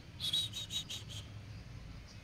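A quick run of about six short, high chirps, about five a second, lasting about a second, over faint room hum.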